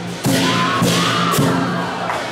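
Lion dance percussion of drum, gong and cymbals playing loudly, with three crashes about half a second apart over the ringing of the gong.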